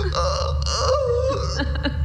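A person's pained, non-verbal moan whose pitch wavers up and down, over a steady low hum.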